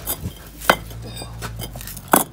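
Hard clay engineering bricks knocking together as one is lifted from a stack: one sharp clink about a third of the way in, with a few lighter taps around it.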